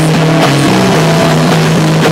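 Live rock band playing loudly: distorted electric guitars hold a low sustained chord that shifts pitch about two-thirds of a second in, with drums hitting steadily underneath.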